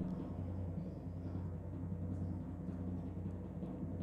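A low, steady timpani-style drum roll in suspense music, played while the winner of the draw is awaited.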